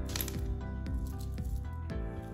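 Background music, with a few sharp clicks of small decorative pebbles clinking together in a palm as they are handled and set on potting soil.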